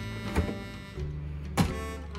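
Small minibar fridge door being pulled open: a light click about half a second in, then a sharper knock as the door comes free about a second and a half in. Background music with steady held notes plays under it.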